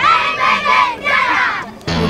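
A group of children shouting together in unison, two loud calls in quick succession, a team cheer from a youth football side.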